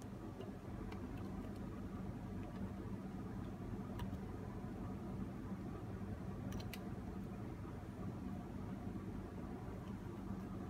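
Steady low hum of room tone, with a few faint clicks from the plastic hose and screw nut being handled at a faucet diverter adapter, about four seconds in and twice close together near seven seconds.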